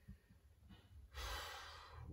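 A man drawing an audible breath in, a hissing intake that begins about a second in and lasts most of a second, just before he speaks again.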